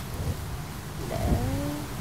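A young woman's voice beginning a word about a second in, over a steady low background rumble.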